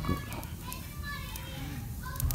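Faint background voices of children chattering and playing, high-pitched and wavering, in a lull between a man's spoken phrases.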